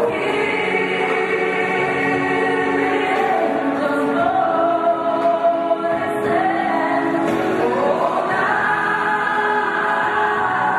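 Choir singing a slow Christian song in long held notes, the melody climbing a little before the end.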